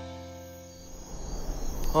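Cartoon background music ends on a held chord that fades away. About a second in, a storm-wind sound effect starts to rise.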